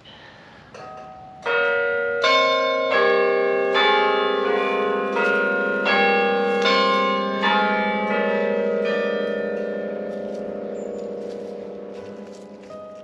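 A slow run of struck, bell-like notes, about one every three-quarters of a second, each ringing on. The strikes stop after about nine seconds and the ringing dies away slowly.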